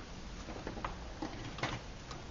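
A few faint, irregular light taps and clicks as an aluminium camp pot is lifted off a small soda-can alcohol stove and set down on a bench.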